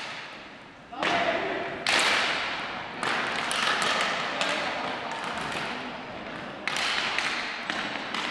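Ball hockey play on a hard gym floor: sticks and ball knocking and thudding in several sudden bursts, with players' voices calling out, all echoing around the large hall.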